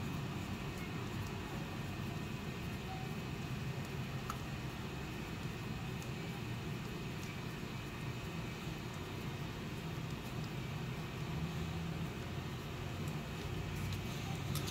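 Steady low background hum with a few faint ticks as a hand screwdriver turns a small screw into a 3D-printed plastic RC chassis.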